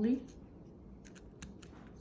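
A few faint, sharp clicks of pliers squeezing a copper wire coil, the turns snapping against each other and the jaws as one side is slowly squished flat.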